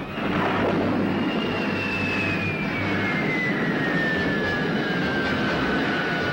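Science-fiction film sound effect: a loud rushing roar that swells in at the start, with one high whistle gliding slowly and steadily down in pitch across it.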